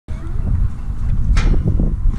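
Wind buffeting an outdoor camera microphone, a loud, irregular low rumble, with one short sharp noise about one and a half seconds in.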